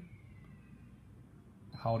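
Near silence: room tone in a pause between spoken words, with a man's voice starting again near the end.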